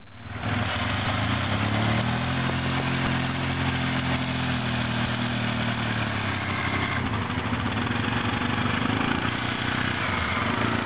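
Quad (ATV) engine running steadily, its note rising slightly from about two seconds in and easing back down a few seconds later.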